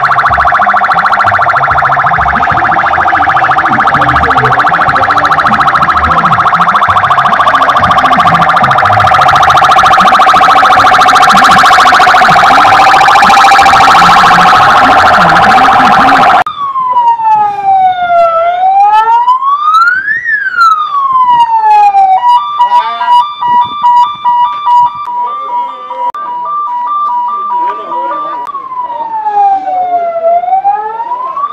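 A loud, dense, steady blare for just over half the time, then a sudden cut to a clean electronic siren. The siren wails down and up in long sweeps, switches for several seconds to two alternating tones, and goes back to a wailing sweep near the end.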